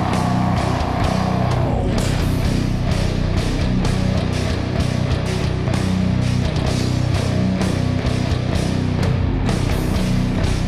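Modern metal band playing live: heavy distorted guitars, bass and hard-hitting drums. A held vocal note bends and ends about two seconds in, and the band plays on with the drums driving hard.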